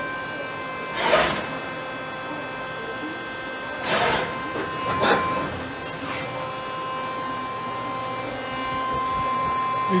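Fanuc Robodrill α-T14iA's automatic pallet changer cycling over the machine's steady hum. Three short bursts of mechanical noise come about a second in and again around four and five seconds.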